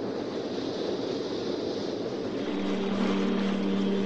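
A steady rushing noise, with a low steady hum joining it about halfway through.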